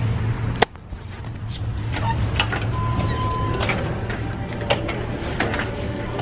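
Going in through a glass shop door: a sharp click about half a second in, then shop background noise with a steady low hum and a brief beep.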